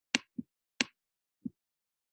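Clicks of a computer pointing device while letters are drawn on screen: two sharp clicks and two softer, duller knocks, unevenly spaced.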